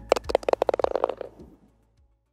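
A golf ball dropping into the cup and rattling: a quick run of small knocks that come faster and faster and die away.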